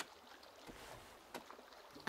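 Near silence: faint ambience with a sharp click at the very start and a few soft knocks after it.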